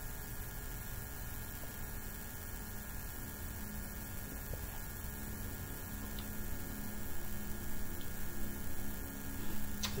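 Steady low electrical hum over faint room noise, with a faint tick about six seconds in.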